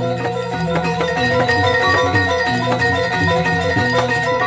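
Balinese gamelan semar pegulingan playing: bronze metallophones ringing in many quick notes over a repeating pattern from kendang drums.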